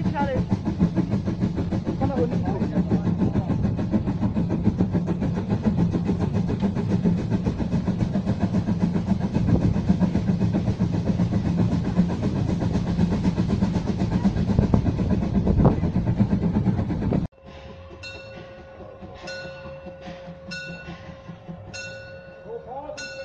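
A narrow-gauge steam train running, heard from an open car just behind the locomotive: a loud steady rumble with a fast rattle of the wheels. About seventeen seconds in it cuts off suddenly to a quieter scene where a bell strikes about every second and a half.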